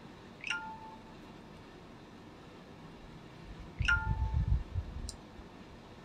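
A short electronic two-note chime, a higher tone falling to a lower one, sounds twice about three seconds apart, the alert of a device notification. With the second chime comes a low rumble lasting about a second.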